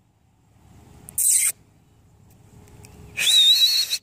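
A person whistling to call horses in from pasture: a short breathy hiss a little after a second in, then near the end a breathy whistle with a high, slightly wavering tone.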